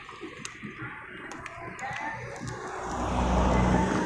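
A car passing close by on the road, its engine hum and tyre noise growing louder over the last couple of seconds.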